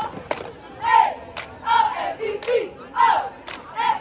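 Cheerleading squad shouting a cheer in unison, several of the called syllables falling in pitch, with sharp hand claps about once a second.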